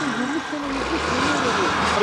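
Steady rushing noise of a fire hose spraying water, fed by a fire truck's running pump engine, whose low rumble grows heavier about half a second in. People's voices call out over it.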